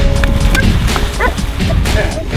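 Labrador retriever giving short, excited yips and whines, one about half a second in and a quick run of them just after a second, over background music.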